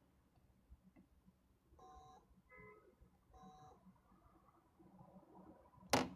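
Three short, faint electronic beeps close together about two seconds in, the first and last alike and the middle one at a different pitch, followed by a sharp click near the end.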